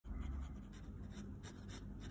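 Metal pen nib scratching on sketchbook paper in a rapid series of short hatching strokes, about four or five a second.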